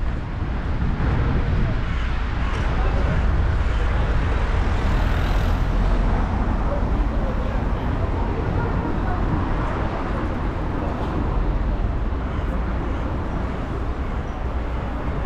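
Busy pedestrian street ambience: a steady wash of passers-by talking and moving about, over a low rumble of wind on the microphone.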